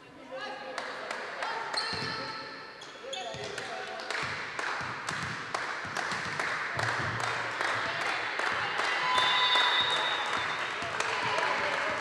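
Volleyball bouncing and being struck on a hardwood court, with many short knocks over players' voices and calls that echo in a sports hall.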